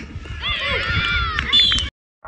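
Several young voices shouting and cheering at once, with a sharp knock just before the sound cuts off abruptly near the end.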